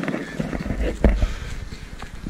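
Footsteps of a runner on an ash track, irregular knocks with a louder one about a second in, over a low rumble of wind and handling on the camera's microphone.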